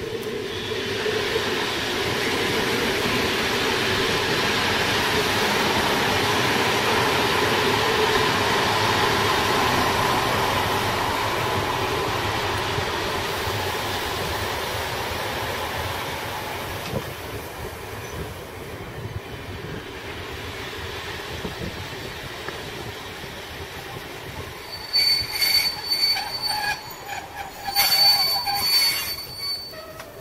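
Mat '54 'Hondekop' electric multiple unit passing along the track. Its running noise swells to a peak within the first ten seconds, then fades slowly as the train moves away. Near the end come several short, loud, high-pitched squeals and crackles.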